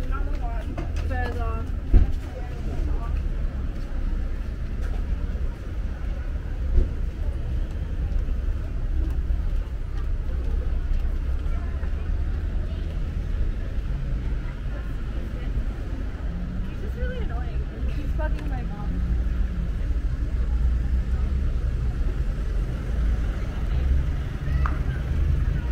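Street ambience: a steady low rumble of traffic, with passers-by talking briefly near the start and again about 17 seconds in. There is a sharp knock about two seconds in.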